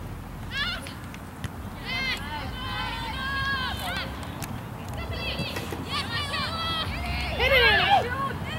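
Several high-pitched voices shouting and calling out across a soccer field, the words not clear, with overlapping calls loudest near the end.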